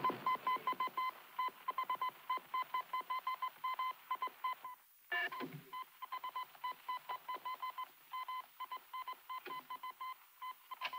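Electronic beeping on one high pitch: an uneven run of short and longer beeps, broken once about five seconds in by a brief sound that falls in pitch.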